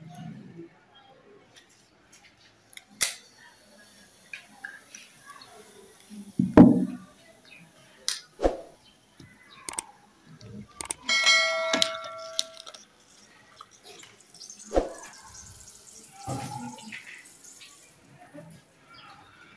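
Glassware and a plastic bottle handled on a lab bench during a baking-soda and acid balloon experiment. Scattered knocks and clicks are heard, the loudest a thump about six and a half seconds in. Near twelve seconds a glass item gives a clear ringing clink.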